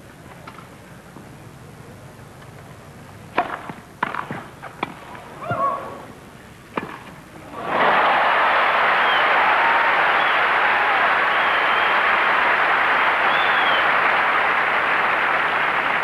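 Tennis ball struck with rackets in a short exchange, a few sharp knocks a fraction of a second to a second apart. About eight seconds in, a stadium crowd breaks into loud applause and cheering with whistles, applauding the point just won.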